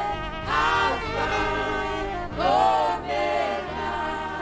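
A small group of women singing a gospel worship chorus, with two swelling sung phrases about half a second and two and a half seconds in, over steady held notes.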